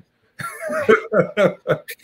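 A man laughing in a run of short, choppy bursts that start about half a second in.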